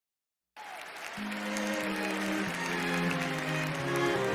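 A live orchestra with strings, starting about half a second in, holds long sustained chords that shift every half second to second over a faint hiss of audience noise.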